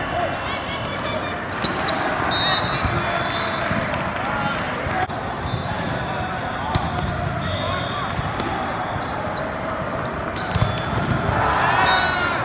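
Indoor volleyball rally in a big echoing hall: scattered sharp slaps of the ball being served, hit and bouncing, short shoe squeaks on the court, and a steady babble of players' and spectators' voices that rises into shouting near the end as the point is won.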